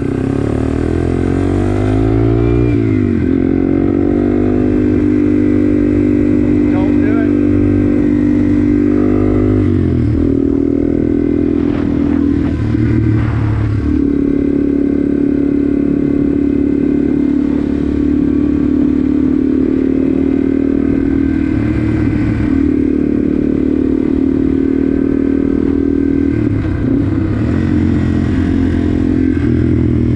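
Yamaha TW200's air-cooled single-cylinder four-stroke engine running as the bike rides along. Engine speed dips and climbs again about two seconds in and around ten seconds in, then holds mostly steady.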